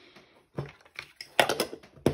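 Metal measuring spoons clinking against a small ceramic bowl and being set down on a stone countertop: a light rustle, then a run of sharp clinks and taps, the loudest about a second and a half in.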